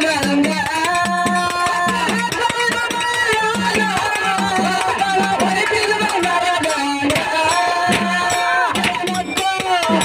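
Kannada dollina pada folk song: a man singing over steady, rhythmic drumming.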